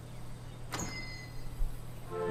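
A single short swish from the cartoon's soundtrack, about three-quarters of a second in, trailing a brief faint high ringing, over a low steady hum.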